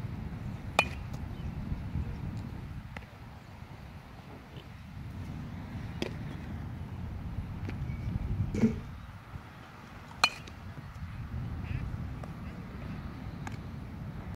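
A few sharp cracks and pops, spread several seconds apart, over a steady low wind rumble: a fungo bat hitting ground balls and the baseball smacking into leather gloves during infield double-play drills.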